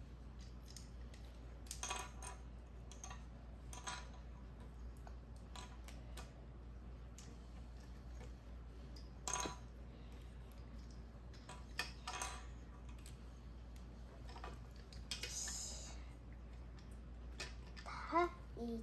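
Faint, scattered clicks and clacks of small hard-plastic parts of an Armored Saurus Raptor Compact transforming dinosaur toy being handled and snapped together, with a brief rustle near the end.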